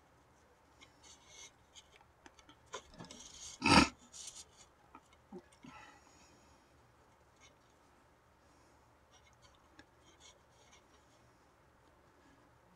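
Paracord being drawn through holes in a deer-hide drum skin and across a wooden drum frame: light rubbing and scraping with scattered small clicks, most of them in the first half. One sharper, louder knock comes about four seconds in.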